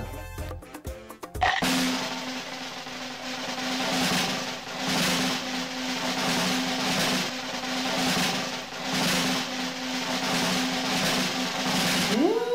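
Background music with drums over a steady held low note, coming in about a second and a half in.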